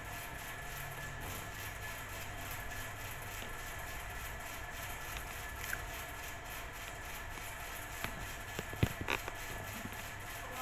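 Steady, low room noise with a faint hum, and a few light clicks and knocks near the end.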